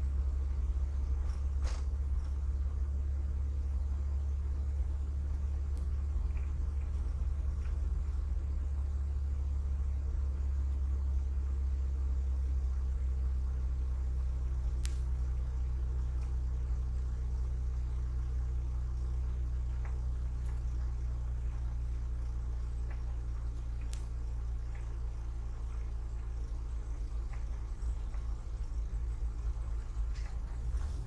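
Car driving slowly along a paved road: a steady low engine and road rumble. Its pitch shifts a little about twelve seconds in, with a few faint ticks now and then.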